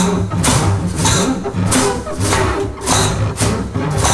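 Improvised jazz: a double bass plays low notes while a drum kit strikes repeatedly, nearly two strokes a second.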